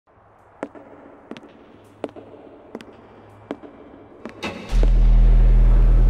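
Logo intro sound design: a series of sharp hits about every 0.7 s over a faint hum, then a sudden loud, low, sustained drone that comes in about three-quarters of the way through.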